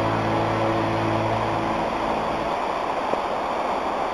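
Shallow mountain stream rushing over rocks, a steady rush of water. Background music fades out over the first two seconds, leaving only the water.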